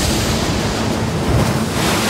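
Loud, steady rush of seawater as a tsunami wave surges ashore, a little brighter near the end.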